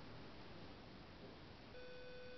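Near silence with a low steady hiss. Near the end, a steady electronic beep tone starts and holds.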